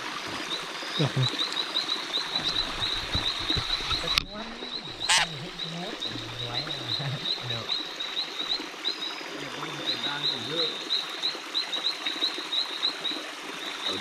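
Frogs calling at night: a rapid, irregular run of short high chirps, several a second, broken by a sharp click about four seconds in.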